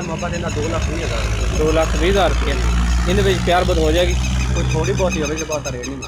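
An engine running with a low, steady drone under a man's voice. It grows stronger about a second in and fades near the end.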